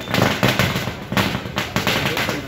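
A string of firecrackers going off in rapid, irregular cracks, with crowd voices underneath.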